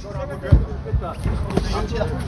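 Thuds in a boxing ring during a clinch: one sharp thump about half a second in, then a few lighter knocks, over voices from around the ring.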